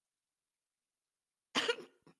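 Silence, then about one and a half seconds in a man coughs once, short and sharp, while laughing.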